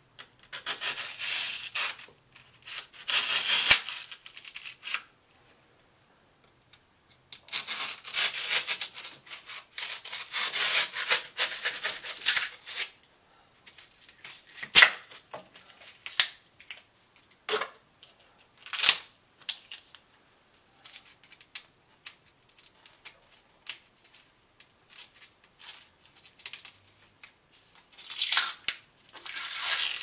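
A knife sawing and scraping through cured rigid urethane foam in several scratchy bursts of a few seconds each, with short clicks and knocks between them.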